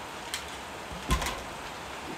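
A man drinking from a plastic shaker bottle: a faint click, then a single swallow about a second in, over a quiet room.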